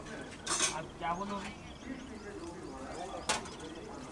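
Faint voices of cricket players talking on the field, with small birds chirping and a single sharp knock about three seconds in.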